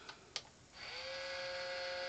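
Monster High Save Frankie toy playset's electronic effect: two small clicks, then a steady electric buzz that starts under a second in as the chamber lights up.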